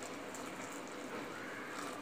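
Boiling water poured in a thin stream onto rice flour in a steel pot: a faint, steady pouring sound.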